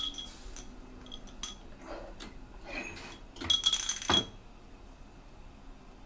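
Glass Ramune bottles clinking as they are handled: a few single clinks, then a loud cluster of ringing clinks and rattling about three and a half seconds in.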